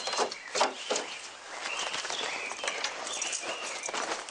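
Birds chirping outdoors over a steady background hiss, with a few short knocks in the first second.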